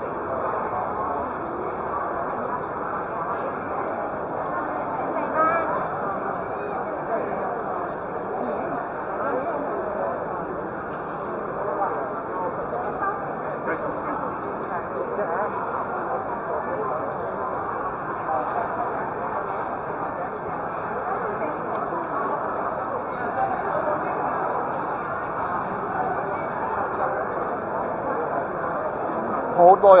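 Crowd chatter: many people talking at once in a steady babble, with no single voice standing out.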